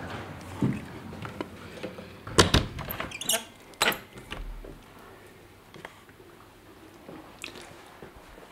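A window being swung shut and latched: a few sharp knocks and clicks from the frame and handle about two and a half to four seconds in, then a low thud. After that the steady hiss of rain coming through the open window drops away to quiet room tone.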